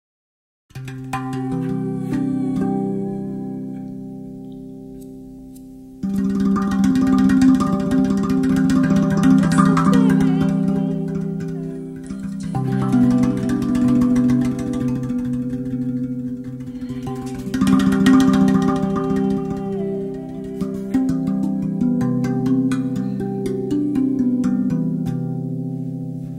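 RAV Vast 2 steel tongue drum in the Golden Gate scale, played with bare hands. A few struck notes ring out and slowly fade. From about six seconds in comes a fast run of hand strikes across the tongues, with lower notes ringing under them.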